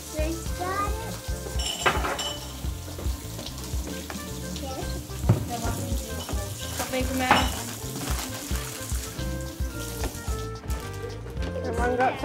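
Background music with a steady low beat, over an even crackly hiss and small clicks of tabletop handling: plastic bread and salami bags rustling, knives and plates knocking as sandwiches are made.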